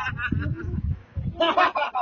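A man's loud, mocking stage laugh trailing off, then a brief second high call about one and a half seconds in.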